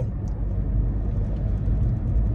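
A car in motion heard from inside the cabin: a steady low rumble of engine and road noise.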